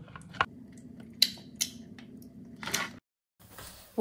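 Handling of a hand mixer and mixing bowl: a handful of light clicks and knocks over a faint steady hum, cut off abruptly about three seconds in.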